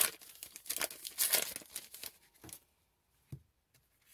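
A trading card pack wrapper crinkling and rustling as it is handled, for about two and a half seconds; then it goes quiet apart from one short click.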